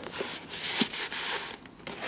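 Paper and cardboard of a handmade papercraft trailer rustling and rubbing as its collaged lid is handled and closed, with one light tap just under a second in.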